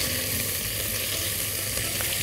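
Sliced chicken searing in hot oil in a pot over high heat, a steady sizzle as it is left unstirred to brown.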